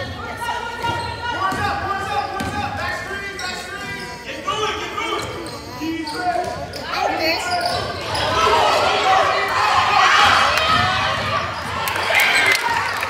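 Basketball dribbling on a hardwood gym floor amid players' and spectators' voices echoing in the gym, with many short squeaks and shouts getting louder over the last few seconds.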